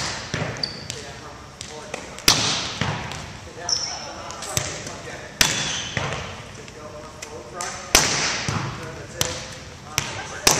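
A volleyball being hit and passed, each contact a sharp slap that echoes around a gymnasium. The loudest hits come about every two and a half seconds, with lighter ball contacts in between.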